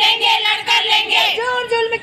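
Women's voices singing a protest song, the notes held and sustained rather than spoken.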